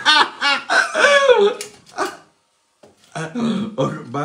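A man laughing in a run of short, high-pitched cackling pulses for about two seconds, then a brief pause and more voice near the end.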